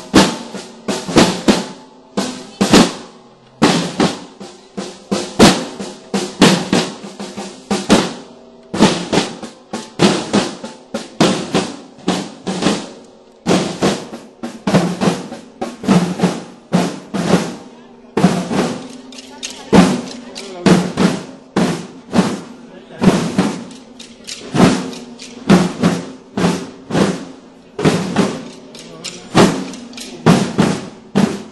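Procession drum band of snare and bass drums beating a steady march with rolls; the strikes are loud and sharp, repeating evenly without a break.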